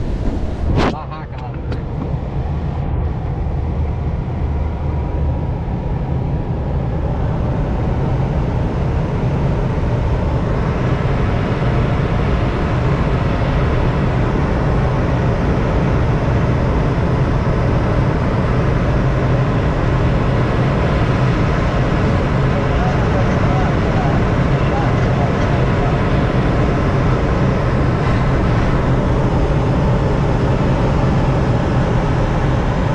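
Steady rush of air around a glider in flight, with a low steady hum underneath. There is a sudden break about a second in, and the rush grows fuller toward the middle and then holds level.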